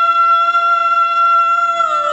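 A woman singing one long, high note into a microphone, held steady with a slight waver and bending away just before the end, over faint karaoke backing music.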